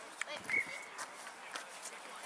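Faint distant voices of players and spectators across an open pitch. About half a second in comes one short, high, steady blast of a referee's whistle.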